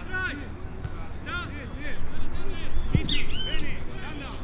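Birds chirping in many quick, short calls, loudest a little past halfway, over faint distant voices and a low background hum.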